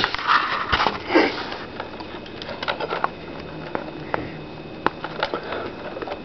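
A sniff, then scattered light clicks and rustles of wires and alligator clips being handled as leads are connected by hand.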